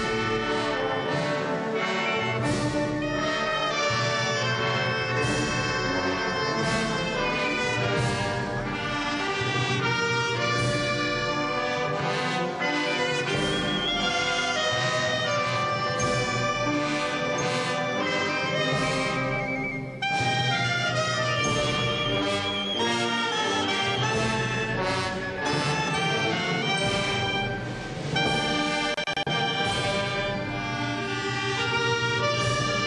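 Orchestral music led by brass, with trumpets and trombones, playing continuously with a brief break about twenty seconds in.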